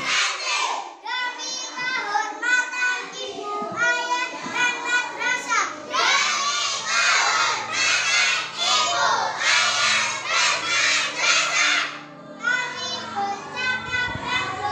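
A group of young children's voices shouting together loudly, in short phrases with brief breaks between them.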